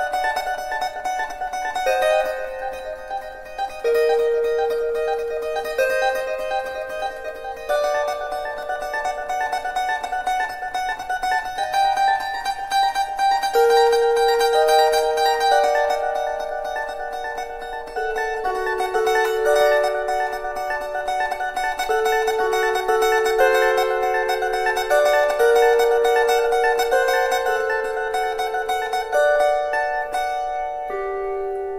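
A bandura plays a slow, plucked melody under a high note held in tremolo throughout. The lower melody notes change about every one to two seconds.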